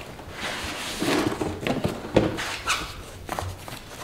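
Packaging being handled: cardboard and foam rustling and scraping as the inner box is slid out of its outer sleeve and opened. A handful of light knocks against the countertop are spread through it.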